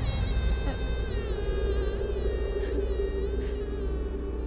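Dramatic background music: a sustained, wavering, buzzy high tone over a steady low drone.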